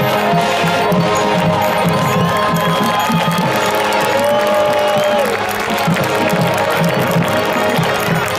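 Marching band playing on the field: long held wind and brass notes over a steady drum beat, with a crowd cheering over the music.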